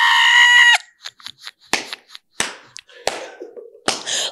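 A woman's high-pitched shriek of laughter lasting under a second, then about four sharp smacks, roughly one every 0.7 s, with faint breathy sounds between.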